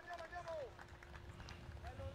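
A faint, distant voice in short syllables over a steady low hum and background noise.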